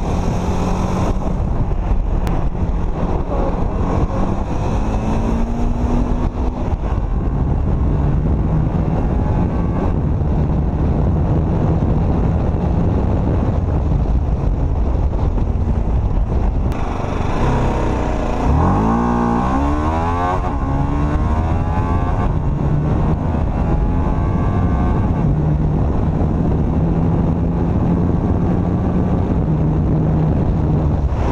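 TVS Apache RR 310's 313 cc liquid-cooled single-cylinder engine running hard at speed, heard from the rider's seat with wind rushing over the microphone. About two-thirds of the way through, the engine note climbs sharply before settling back to a steady pull.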